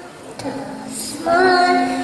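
A woman and young children chanting a Sanskrit mantra in sung tones into a microphone: a brief pause, then a long held note from about a second in.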